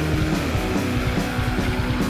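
Old-school death metal recording: heavily distorted guitar riffing over bass and fast, dense drumming, playing on without a break.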